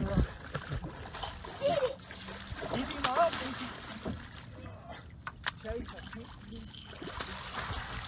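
A large blue catfish splashing at the water's surface beside the boat as it is brought up to the net, with faint excited voices.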